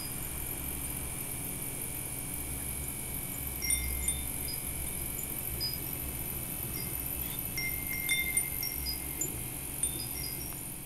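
Sparse, high chime notes ringing at random pitches, like wind chimes, over a steady hiss. The notes come more often in the second half.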